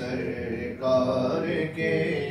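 Unaccompanied male singing of an Urdu naat, the melody drawn out in long held notes.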